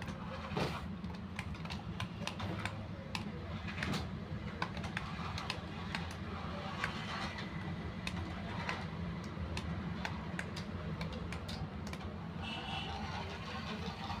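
Small plastic toy remote-control vehicles: irregular light plastic clicks over a steady low hum from their small motors and gears.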